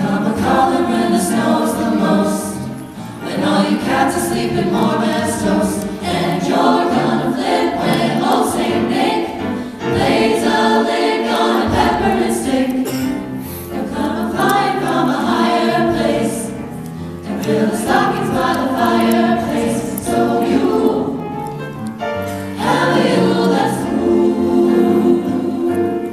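Vocal jazz ensemble singing a jazzy close-harmony arrangement into microphones, in phrases of a few seconds with brief breaks between them.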